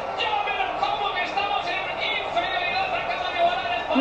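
Speech heard in the background, most likely the televised football match commentary playing in the room, continuous and somewhat muffled over a low steady haze.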